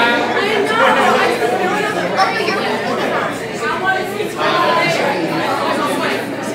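Several people talking over one another in overlapping chatter, including a drawn-out "hiiii" greeting near the start.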